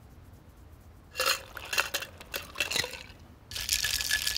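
A metal cocktail shaker being shaken hard: a loud, dense rattle that starts near the end. Before it, from about a second in, come a few scattered clinks and scrapes.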